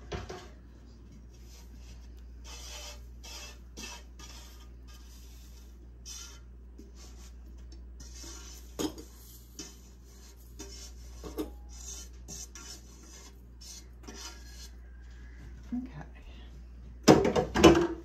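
Crisp oven-dried parsley rustling and scraping as it is poured from a pan through a stainless steel funnel into a glass jar, with a few sharp clinks of metal on glass. A louder clatter comes near the end, over a steady low hum.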